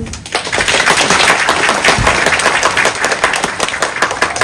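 A roomful of people applauding: dense hand clapping that starts a moment in, right after a speaker's closing thanks, and begins to thin near the end.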